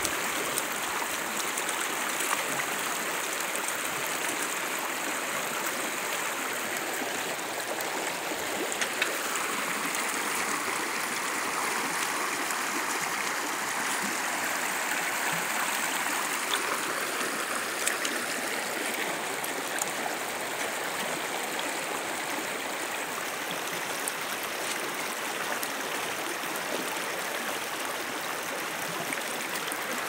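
Shallow creek water running over rocks, a steady rushing burble, with a few brief faint clicks along the way.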